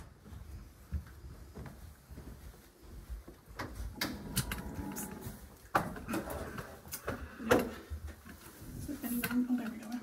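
Walking through rooms with a handheld camera: footsteps and handling noise broken by a series of knocks and clunks, as a wooden door is pushed open around the middle. The loudest clunk comes a little past the middle.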